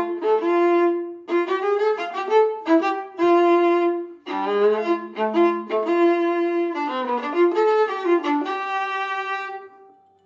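Viola bowed solo playing a jazzy tune in quick, separate notes with brief breaks between phrases; the playing stops just before the end.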